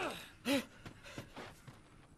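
A man's short gasp about half a second in, then a few faint soft ticks.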